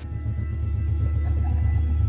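A deep, steady rumbling drone from a suspense or horror music cue, swelling in over the first half second and then holding.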